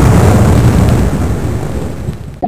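Explosion sound effect: a loud blast with a deep rumble that fades slowly over about two seconds, standing for a mine going off against a submarine.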